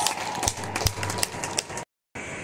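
Ballpark ambience in a sparsely filled stadium: a murmur of background noise with scattered sharp claps and knocks. The sound cuts out abruptly near the end.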